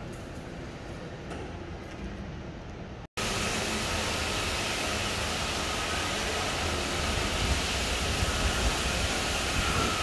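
Quiet lift-lobby room tone that cuts off abruptly about three seconds in. After the cut, a louder steady rushing noise with a low rumble and a faint high whine runs on while a Toshiba passenger lift arrives and its doors open.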